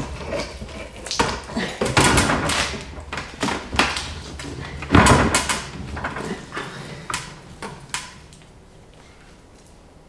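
Plastic knocks, clatter and rustling as a grow light is fitted onto the top of a plastic aeroponic tower garden and its cord handled, with irregular knocks for about eight seconds, then quiet.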